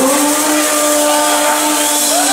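Live blues band playing, with the female lead singer holding one long steady note over electric guitars, bass and drums.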